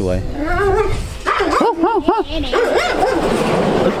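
A dog barking in a quick run of about four short yips, a second and a half in.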